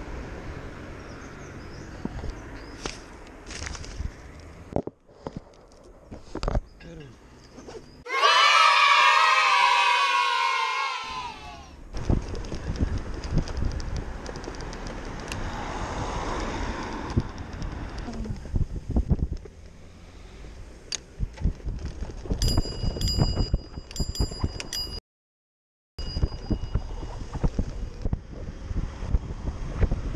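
Wind on the microphone and traffic noise from a bicycle ridden through city traffic. About a third of the way in there is a loud pitched sound lasting about three seconds, its pitch wavering and falling, and later a few quick, high rings.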